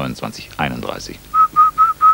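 Four short whistle blasts in quick succession, all on the same pitch, starting a little past a second in. They are a halt signal after the count has skipped from 29 to 31.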